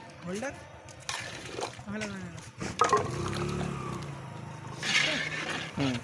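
Voices talking over a few sharp clinks and scrapes of a long metal ladle against a large iron karahi as thick gravy is stirred.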